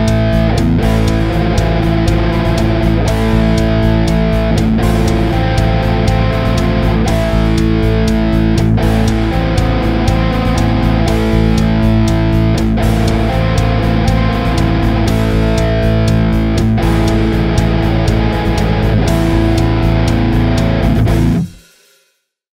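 Heavily distorted Ibanez electric guitar playing a riff in a steady rhythm that switches back and forth between standard power chords and extended variations with added intervals, such as a minor sixth in place of the octave. It stops abruptly near the end.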